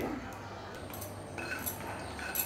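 Wooden spatula stirring almonds, cashews and pistachios as they dry-roast in a non-stick kadai: quiet scraping, with a few light clicks of nuts against the pan from about a second and a half in.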